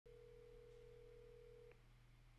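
A faint, steady electronic tone on one pitch, held for nearly two seconds and ending with a small click, over a low electrical hum.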